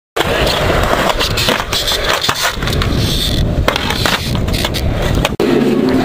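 Skateboard wheels rolling loudly over a concrete skate park surface, with a stream of clicks and knocks from the board. The sound cuts off suddenly just over five seconds in.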